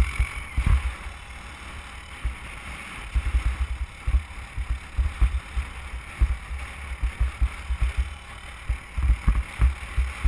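Irregular low thumps of wind buffeting the helmet-mounted camera's microphone, over a steady hiss of a snowboard sliding on snow while being towed.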